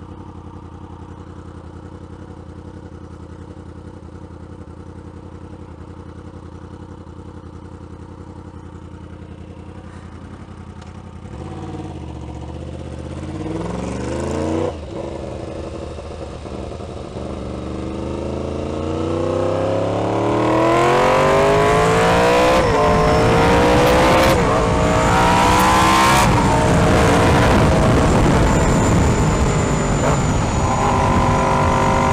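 A 2016 Yamaha R1's crossplane inline-four motorcycle engine idles steadily, then pulls away about eleven seconds in. It accelerates up through several gears, its pitch rising in each gear and dropping at each upshift, and it runs louder and steadier near the end.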